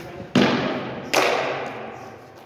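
Two sharp impacts during a smallsword fencing bout, about three-quarters of a second apart, each with a short echoing tail.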